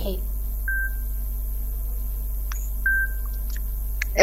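Steady low electrical hum in a lull between voices, with two short high pings about two seconds apart and a couple of faint clicks.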